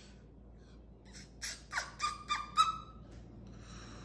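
Moluccan cockatoo giving a quick run of five or six short calls about a second in, some sliding down in pitch and some held briefly on one note, the last the loudest.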